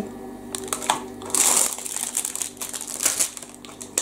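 Rustling and crinkling of a frozen microwave meal's cardboard box and plastic packaging being handled, with irregular clicks and a louder rustle about a second and a half in.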